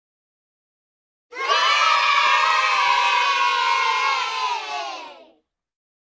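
A crowd of children cheering and shouting together. It cuts in sharply out of silence about a second in, holds for about four seconds, and fades out as the voices slide down in pitch.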